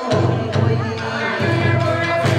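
Live Kawachi ondo music: singers over electric guitar with a steady beat of drum strikes, about two a second. A low sung note holds, breaks off about one and a half seconds in, and resumes.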